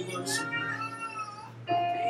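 A high, wavering voice rising and falling in pitch over soft background music, dropping away and then returning louder near the end.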